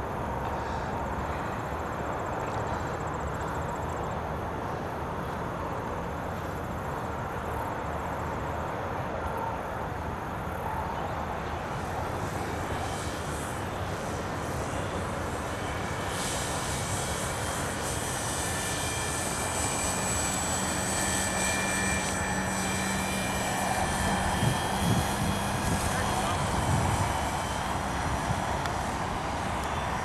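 Small engine of a radio-controlled model autogyro running steadily while its rotor spins up on the takeoff roll. From about halfway a higher whine comes in and the sound grows louder as power is added, ahead of liftoff.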